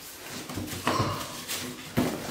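Cardboard box and packaging being handled as a stunt-scooter handlebar is pulled out, with rustling and a few short knocks.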